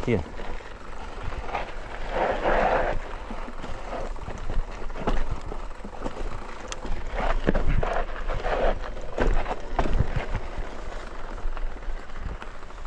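Mountain bike rolling down a dirt trail, heard from the rider's camera: frequent short knocks and rattles as it goes over bumps, over a steady low wind rumble on the microphone.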